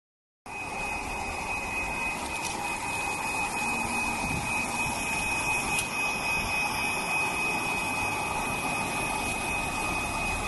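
An automatic nursery seeding machine running: a steady mechanical noise with a thin, high, constant whine, plus a couple of faint clicks.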